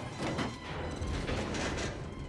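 Film soundtrack mix: background music under mechanical sound effects from the hovercraft's cockpit, with two swelling rushes of noise, one shortly after the start and a longer one in the second half.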